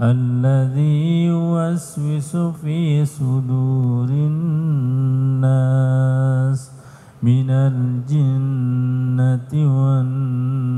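A man's voice chanting in long, held melodic notes with wavering ornamental turns, in the style of Arabic Quranic recitation. There is a short break about seven seconds in.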